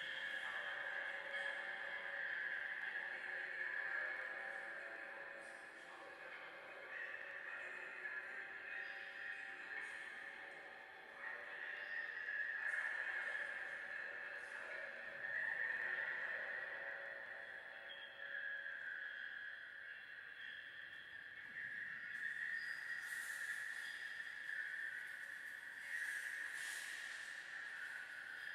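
Ambient background music of sustained, drone-like held tones that swell and fade every few seconds.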